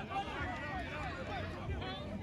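Several voices overlapping at a distance: spectators and players calling out at a rugby league match, with no single clear word.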